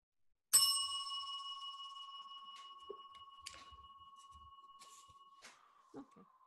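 A small metal bell or chime struck once, ringing out with a clear tone that fades slowly; a few faint clicks sound over it, and the higher ring is cut short about five seconds in.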